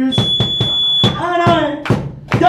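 Live band music with a steady beat of about four strokes a second. A sustained, piercing high tone sounds for about a second near the start, over a voice singing.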